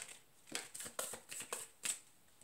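Tarot deck being shuffled by hand: a quick run of about five short card rustles, the last and sharpest just before the two-second mark.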